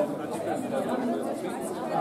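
Several people chattering at once, overlapping voices of a small group with no single clear speaker.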